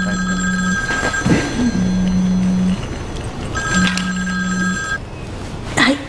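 A cell phone ringing with an electronic two-tone ringtone. It rings twice, at the start and again about three and a half seconds in, while a low buzz pulses three times underneath.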